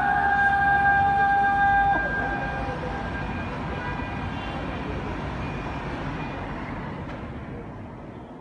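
Muezzin's call to prayer sung in the Uşşak makam: a long held note ends about two seconds in with a short falling slide, then the sound fades away slowly in its echo over a low background hum.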